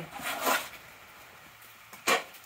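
A short scraping rustle about half a second long as a metal pizza tray is slid off a metal pizza peel onto a wooden chopping board.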